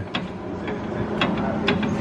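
Ford 8.8 rear differential's ring gear rocked back and forth by hand, a few irregular clicks as its teeth take up the lash against the pinion while the gear play is checked. A steady low hum runs underneath.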